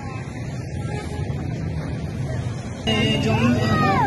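Street noise: a steady low traffic rumble with faint voices. About three seconds in, it cuts to loud shouting voices.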